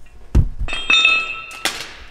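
Loose steel hardware clinking: a dull thump, then a metal part ringing with a clear note for about a second, and a sharp clink near the end.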